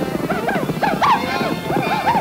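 Cartoon soundtrack music with a rapid run of short swooping animal-like cries, about five a second, each rising and falling in pitch: stylised sound effects for the roped cattle herd.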